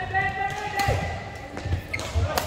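A badminton rally in a large hall: a racket strikes the shuttlecock with a sharp crack a little under a second in, amid thuds of footwork on the court floor. A steady high-pitched tone with overtones runs through the first second and a half, then drops away.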